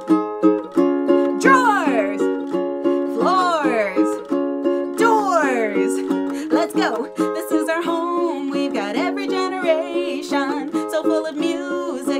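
Ukulele strummed in steady chords while a woman sings along. Her voice slides down in several long falling glides, with a sung shout of "Doors!" about halfway through.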